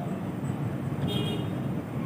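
Steady low background noise, with a brief high-pitched toot about a second in.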